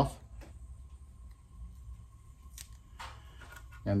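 Mostly quiet room with a few faint clicks, from handling a small taped bundle of thin wooden planks as the tape is taken off.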